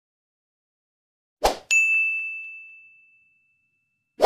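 A short swoosh, then a single bright bell-like ding that rings out and fades away over about a second and a half: an editing sound effect for a like/subscribe animation.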